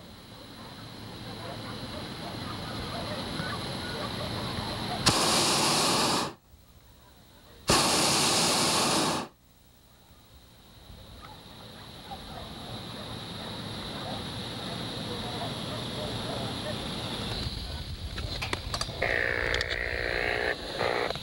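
Hot air balloon's propane burner firing in two blasts, one of about a second starting some five seconds in and one of about a second and a half starting near eight seconds. Each blast is a loud, steady rush that starts and cuts off abruptly.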